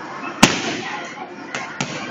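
Kicks and punches smacking into Thai kickboxing pads: one loud, sharp kick impact about half a second in, then two lighter strikes in quick succession near the end, over background chatter.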